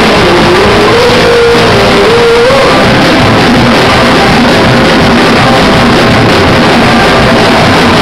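Punk rock band playing live: distorted electric guitars, bass guitar and drum kit, loud and constant. A wavering held note stands out over the first two and a half seconds.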